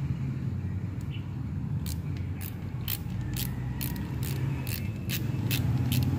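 Ratchet wrench with an 8 mm socket clicking as it turns the oil filter cover bolts on a motorcycle engine, about three clicks a second starting about two seconds in. A steady low hum runs underneath.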